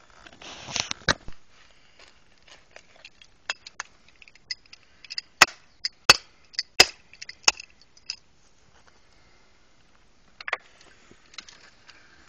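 Broken clay drain-tile shards being handled and laid onto a clay tile pipe in loose soil: a short gritty scrape of dirt and shards, then a string of sharp clay clinks and taps, the loudest four coming close together in the middle.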